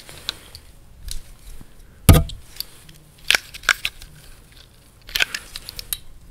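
Objects being handled close to the microphone: scattered clicks and light knocks, with one louder knock about two seconds in.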